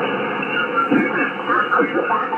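Shortwave single-sideband reception from an Icom IC-756PRO2 transceiver's speaker on the 20-metre band: a steady hiss of band noise with the voices of distant contest stations coming through, thin and narrow-sounding.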